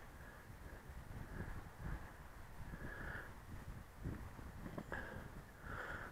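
Faint, uneven wind rumble buffeting an outdoor microphone in gusty wind, rising and falling in strength.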